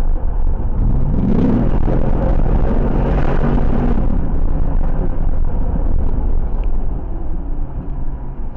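Car engine revving up under hard acceleration, heard from inside the cabin over a heavy low road rumble; its pitch climbs about a second in, then holds steady, and the noise eases a little near the end.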